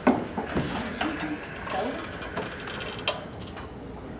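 Classroom table and chairs being shifted: a sharp knock at the start, then scattered clunks and scrapes, with low voices in the background.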